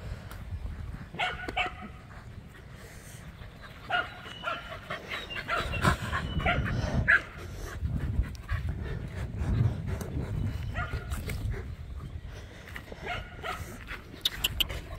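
A dog barking and yipping in short runs: once about a second and a half in, a longer run from about four to seven seconds in, and again around eleven seconds and near the end. A low rumble sits under the middle stretch.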